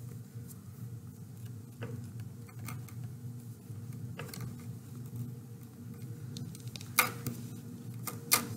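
Faint handling sounds as fingers pull dream catcher thread tight around a knot: a few soft, scattered clicks and ticks, the sharpest about seven seconds in, over a steady low hum.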